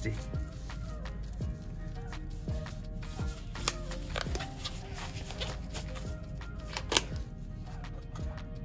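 Blue nitrile gloves rustling and crinkling as they are pulled onto the hands, over steady background music, with a sharp click near the end.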